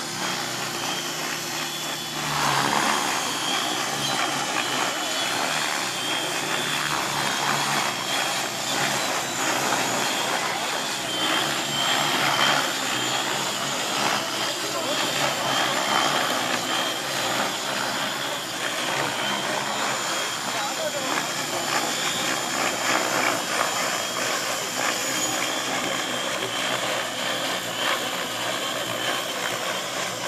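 Several radio-controlled model helicopters flying together overhead: a steady mix of rotor noise and a high motor whine, growing louder about two and a half seconds in.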